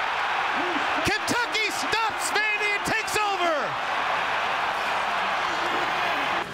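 Home stadium crowd cheering loudly at a fumble recovery by the home team, with excited shouting voices rising and falling over the roar during the first few seconds.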